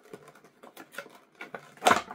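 Clear plastic blister packaging of a Hot Wheels car being pried and torn open by hand: a run of small irregular clicks and crinkles, then one loud crack near the end.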